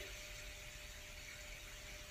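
Faint room tone: a steady low hiss with a thin, faint hum and no other events.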